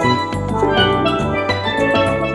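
Carousel band organ music: sustained organ tones with bright, bell-like notes over a steady bass and drum beat.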